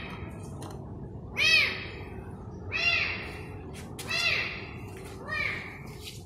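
A trapped kitten meowing from inside a narrow gap between two walls: four short cries, each rising and then falling in pitch, a little over a second apart.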